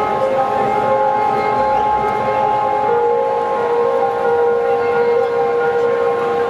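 Live trance music heard from among the crowd: sustained synthesizer chords with no beat, held notes that shift slowly, a lower note entering about three seconds in, over the noise of the crowd.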